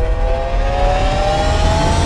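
Sound-effect car engine revving up: a slowly rising whine over a deep rumble.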